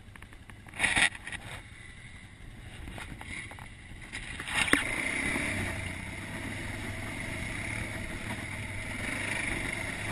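ATV engine running on a rocky trail, getting louder and steadier about halfway through. A brief loud rush comes about a second in, and a sharp knock, the loudest sound, just before the engine builds.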